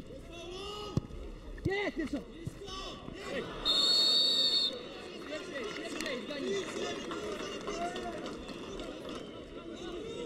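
A referee's whistle blown once, a single steady blast of about a second near the middle, stopping play. Players' shouts and spectator chatter go on underneath.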